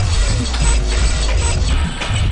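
Electronic techno track from a live PA set, with a heavy sustained bass that drops out near the end.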